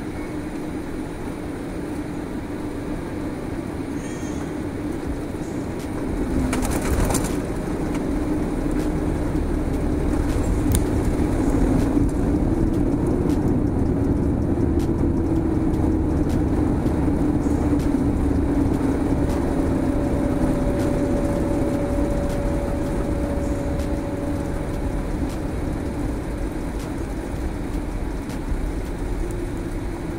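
Jet engine and cabin rumble inside a Boeing 787-8 Dreamliner on the ground, with a steady hum. A sharp knock comes about seven seconds in. The noise then runs louder for about fifteen seconds before easing off.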